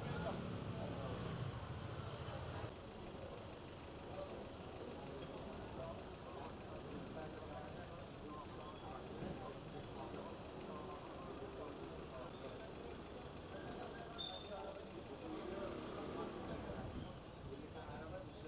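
Street ambience: a vehicle engine hums steadily in the first few seconds, with two louder swells, then gives way to a faint murmur of traffic and distant voices. Short, high, thin chirps recur through most of it.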